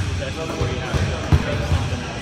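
Basketballs bouncing on a hardwood gym floor: several irregular low thumps from more than one ball, the loudest a little past the middle.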